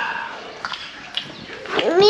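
A few faint clicks, then a high, squealing voice sound near the end: a small child's vocalising.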